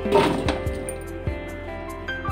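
Background instrumental music with held notes. Near the start comes a brief, loud rattling rush as a mass of green grapes is tipped into a steel bowl.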